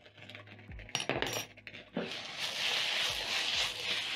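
A metal spoon clinks a few times against a small glass salt jar about a second in. From about two seconds in comes a steady sizzle as the fried potatoes and sausages are stirred in the hot pan.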